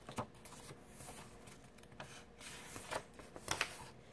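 A page of a hardcover picture book being turned by hand: several faint rustles and flaps of paper.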